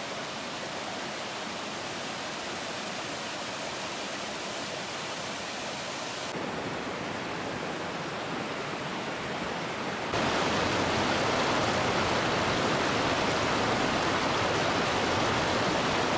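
Steady rush of a waterfall and a creek cascading over granite boulders. The rush steps up, louder, about ten seconds in.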